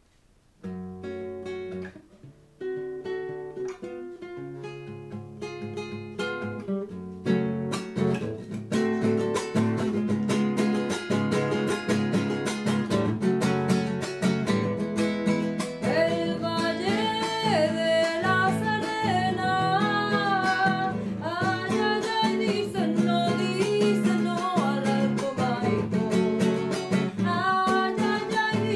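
Nylon-string classical guitar playing a cueca: a few slow plucked notes at first, then a steady strummed cueca rhythm. About halfway through, a woman's singing voice joins the guitar.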